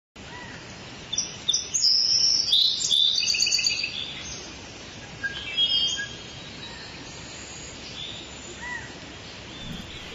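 Birds chirping and calling in a jungle ambience: a flurry of rapid high chirps in the first few seconds, more calls around the middle, and a couple of short rising whistles near the end, over a steady background hiss.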